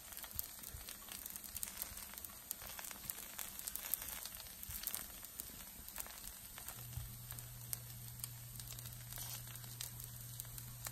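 Faint sizzling and crackling of a dosa cooking on a hot nonstick pan, with soft scraping of knives spreading a paste over it. A low steady hum comes in about seven seconds in.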